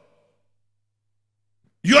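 Near silence, with no room tone at all, then a man's voice starts speaking just before the end.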